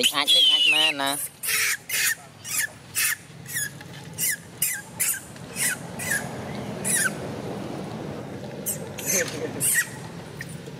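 A young long-tailed macaque crying with a run of short, high-pitched shrieks, each dropping in pitch, one or two a second; the distress cries of a baby monkey that has been bitten.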